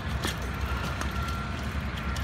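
A bicycle carrying two riders rolling off over paving stones: a low rumble and hiss with a few light clicks, and a faint thin whine for about a second in the middle.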